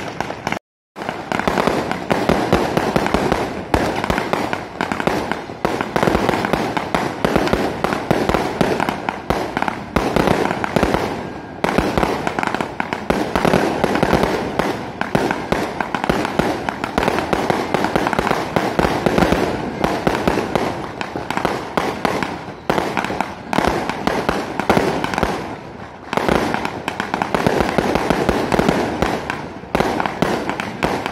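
Fireworks and firecrackers going off in a dense, unbroken barrage of bangs and crackles, the blasts overlapping with hardly a pause. The sound drops out completely for a moment just under a second in.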